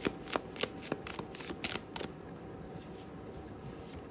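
A deck of tarot cards being shuffled by hand: a quick run of soft card snaps and slides for about two seconds, then only a few faint rustles.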